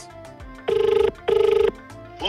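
Telephone ringback tone of an outgoing call heard over a speakerphone: one double ring, two short fluttering buzzes close together, starting under a second in. This is the caller's side of a call that is ringing and not yet answered.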